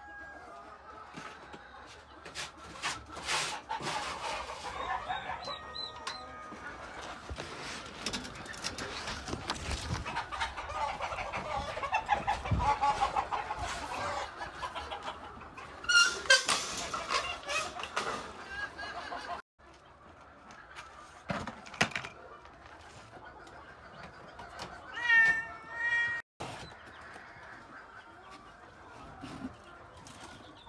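Chickens clucking and calling in wooden poultry pens, with several sharp knocks and clatters from the cages. About 25 seconds in comes one long wavering animal call.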